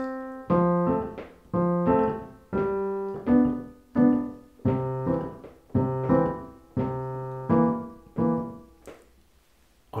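Piano played with the left hand alone: a steady, repeating pattern of low bass notes and chords, about two strokes a second, stopping about a second before the end.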